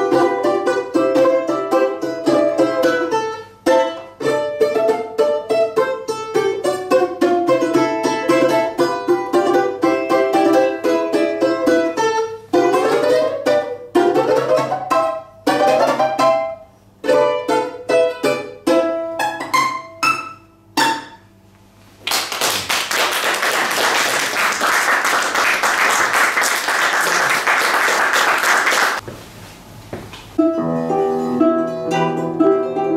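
Balalaika played solo: a fast melody of tremolo-sustained notes and quick rising runs, ending in a few separate final chords about two-thirds of the way in. Audience applause follows for several seconds.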